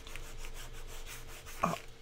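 A hand-held craft file rubbed back and forth over a small notebook's slick cover, making a soft scuffing. The strokes file off the cover's shine to give it tooth so PVA glue will grip.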